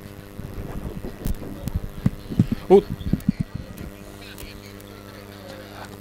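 A lull in the commentary track: a steady low electrical hum with scattered faint knocks and clicks. A man makes a short "uh" about three seconds in.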